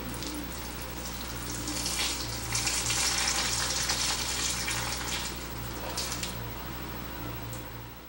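Water running, swelling about two seconds in and easing off toward the end, over a steady low hum.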